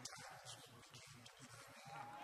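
Near silence, with faint voices in the background.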